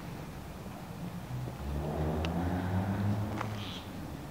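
A low engine hum swells from about a second and a half in and fades near the end, as of a motor vehicle passing. Two faint high ticks sound over it.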